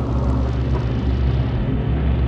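Ambient electronic drone music: a steady low rumble of held deep tones under a dense, noisy wash, with no beat.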